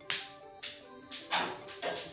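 About five sharp plastic clicks and snaps, roughly half a second apart, from a LEGO scorpion's rubber-band-powered tail launcher being pulled back and worked by hand.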